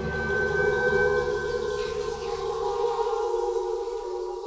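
Ambient music: a sustained drone of held tones with no beat, whose low part drops away about three seconds in.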